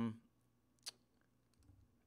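A single sharp click of a computer mouse, selecting an item in a program, heard just under a second in, right after the tail of a drawn-out 'um'.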